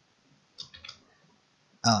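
A quick run of three or four computer keyboard key clicks about half a second in, as a letter is typed into a document, followed near the end by a voice starting to speak.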